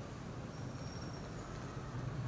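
Faint, steady city traffic ambience: an even wash of distant road traffic with a low, constant rumble.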